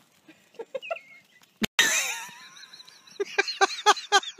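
Rubber squeaky dog toy squeaking as a corgi grabs and chews it. There is a loud sudden squeal about two seconds in, then a quick run of short, same-pitched squeaks, several a second, near the end.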